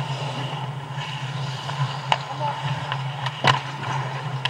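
Ice hockey play around the net: skate blades scraping the ice, with sharp clacks of sticks and puck about two seconds in and again, loudest, about three and a half seconds in, over a steady low arena hum and faint shouts of players.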